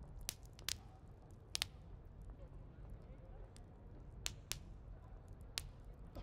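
Tavern ambience of eating and drinking: a low, steady background murmur of voices with about half a dozen sharp clinks and knocks of tableware scattered through it.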